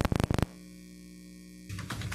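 A rapid run of loud clicks at the start, then a steady electrical mains hum; music begins near the end.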